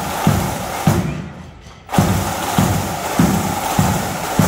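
Marching band drums: a bass drum beating steady march time, about one beat every 0.6 s, over a rattle of snare drums. The drumming drops away for about a second a second in, then picks up the beat again.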